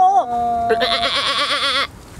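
A voice holding long, steady pitched notes, the last one about a second long with a fast wavering that stops abruptly just before the end.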